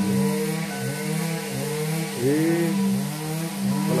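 A small engine running and being revved up and down again and again, each rev a rise and fall in pitch.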